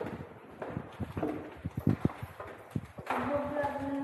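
Footsteps knocking on a hard tiled hallway floor, irregular and echoing lightly, with one louder step about two seconds in. A person's voice holds a drawn-out sound from about three seconds in.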